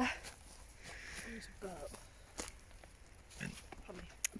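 A woman's brief, quiet 'oh' and breathy vocal sounds, with a few light clicks between them.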